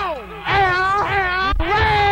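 A singer's voice wailing in long, sliding calls that fall in pitch, on a live go-go band recording from 1983. A single thump cuts across it about one and a half seconds in.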